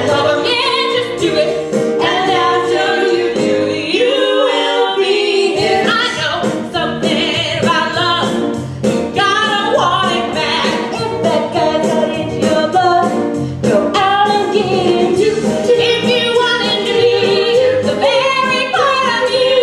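A musical-theatre song in 1960s pop style: voices singing over instrumental accompaniment with a steady beat.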